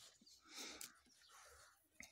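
Near silence, with two faint soft rustles, one about half a second in and one about a second and a half in.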